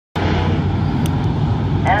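A pack of street stock race cars running together around the oval, a steady low engine drone from the whole field.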